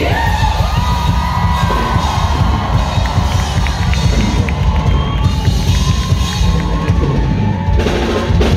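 A live pop band playing with the audience cheering and shouting over it. A high held note glides up at the start and is sustained for several seconds.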